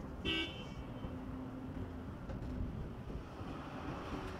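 Road traffic ambience: a steady low rumble, with a short high-pitched toot about a quarter of a second in.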